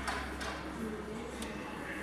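Quiet room background: a steady low hum with faint distant voices and a single soft click a little over a second in.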